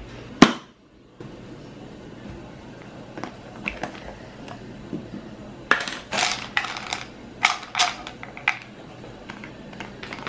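Plastic supplement bottles being handled: a single sharp click just after the start, then a cluster of sharp plastic clicks and rattles from about six to eight and a half seconds in.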